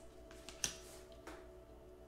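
A quiet pause with a faint steady hum and one light click about two-thirds of a second in, with a couple of fainter ticks around it.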